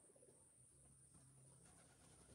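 Near silence: a faint low hum of room tone.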